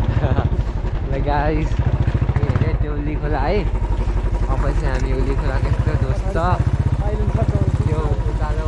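Royal Enfield motorcycle engine running at low road speed, its exhaust a steady, even low thump, with a voice heard over it.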